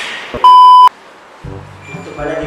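A single loud electronic bleep, one steady high tone lasting under half a second that starts and cuts off abruptly about half a second in. Background music with a low bass line comes in near the end.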